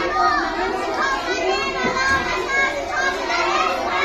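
Many children's voices at once: a classroom of schoolchildren talking or reciting over one another, with no single voice standing out.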